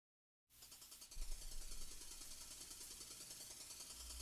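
Faint, rapid ticking over a low hum, starting about half a second in; a low rumble joins about a second in.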